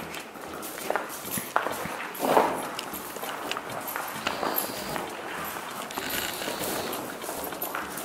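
Footsteps of several people walking on a gritty cave path: irregular crunching scuffs, with one louder scrape a couple of seconds in.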